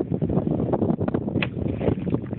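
Wind buffeting the microphone, with one short, sharp strike about one and a half seconds in: a golf iron swung through shallow water at a half-submerged ball, sending up a splash.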